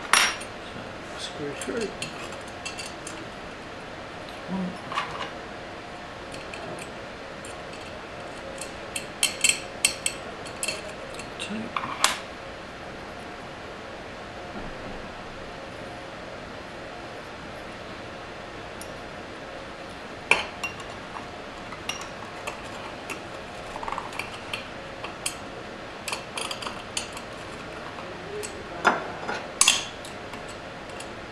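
Small metal parts clinking and tapping: screws, a metal bracket and the inverter's finned metal case being handled and fitted back together. The clicks come in scattered clusters, with quiet stretches between them.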